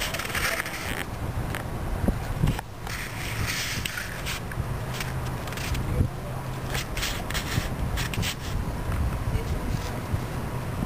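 Wind on a handheld camera's microphone with scraping, crackling handling noise and scattered short clicks.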